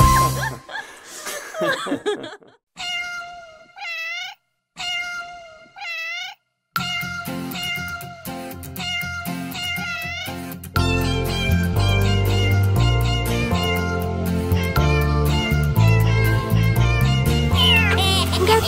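Two long cartoon-kitten meows, one after the other, each ending in a sliding upturn of pitch. Then a children's song intro begins, with the bass coming in partway through.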